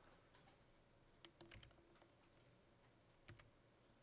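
A few faint computer keyboard key presses against near silence: a small cluster a little over a second in, then another a little past three seconds.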